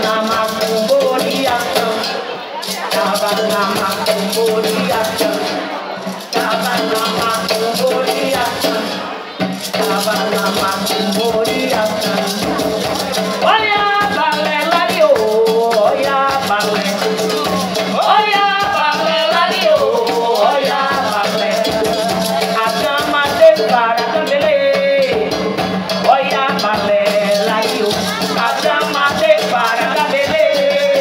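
Live acoustic percussion music: a hand drum and a cajón played together with a rattling shaker, dense and steady throughout. A voice sings over it, most clearly in the middle stretch.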